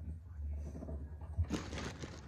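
Handling noise from a hand brushing against the phone's microphone: a low rumble, a knock, then a short rustling hiss about one and a half seconds in.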